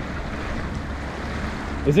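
Lake water lapping and splashing against a concrete seawall, a steady wash of water noise, with wind rumbling on the microphone.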